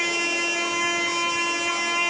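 Nadaswaram, the South Indian double-reed pipe, holding one steady, reedy long note without a change in pitch.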